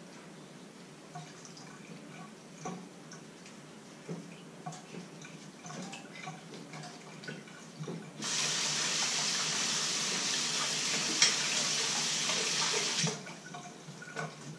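Hand-washing dishes at a stainless-steel sink: faint scrubbing and small clinks, then the kitchen tap is turned on about eight seconds in and runs steadily for about five seconds before being shut off.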